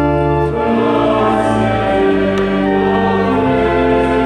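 Mixed choir singing a slow Croatian Christmas carol in held, sustained chords that change every second or two, over low organ notes.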